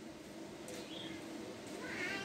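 Quiet background with a faint animal call: a short high note about two-thirds of a second in and a longer pitched call near the end.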